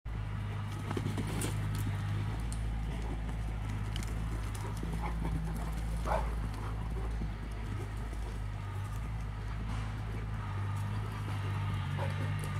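Cane corsos' paws scuffing and thudding on dry dirt as they dash after a laser dot, with scattered short clicks, over a steady low hum.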